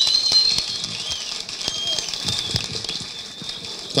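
Scattered hand clapping from a seated audience over a low crowd murmur, with a thin, wavering high-pitched tone running through it.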